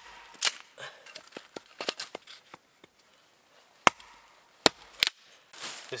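An axe splitting short pieces of dry wood on a chopping log for fire-starting kindling. There is one sharp strike about half a second in, then three quick strikes near the end, with small clicks of wood pieces between them.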